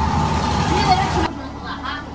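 Busy workshop-kitchen noise: a steady hum with clatter and voices mixed in, cutting off abruptly a little over a second in to a much quieter room with faint voices.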